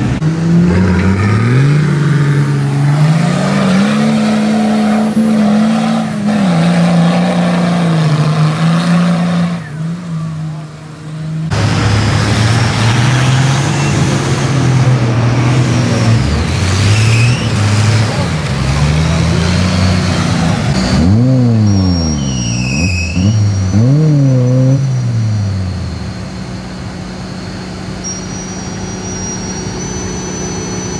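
Off-road 4x4 engines revving hard while driving through deep mud, the engine pitch rising and falling with the throttle. About eleven seconds in, the sound changes abruptly to a bogged-down orange Toyota Land Cruiser 40-series. Around two-thirds of the way through there is a run of quick repeated revs, and the engine is quieter near the end.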